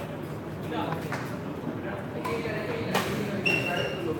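Badminton rally: rackets striking the shuttlecock with sharp cracks, the loudest about three seconds in, over people chatting in the hall. A short high squeak comes near the end.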